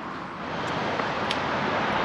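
Road traffic: a steady rush of tyre and engine noise that swells louder across the two seconds, with a few faint ticks over it.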